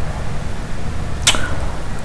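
Steady low hum of background noise on the microphone, with one short whoosh about a second and a quarter in.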